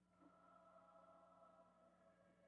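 Near silence with a faint ringing musical note that starts at the beginning, holds, and slowly fades, over a steady low electrical hum.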